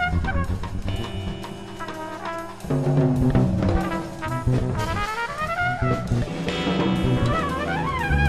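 Live electric jazz improvisation: a trumpet plays lines that bend up and down in pitch over electric guitar, bass guitar and a drum kit with cymbals.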